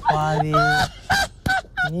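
A man laughing loudly: one long drawn-out cry, then three short ha's.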